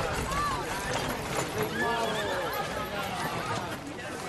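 Horses in a street: hooves clip-clopping and whinnying, mixed with people's voices.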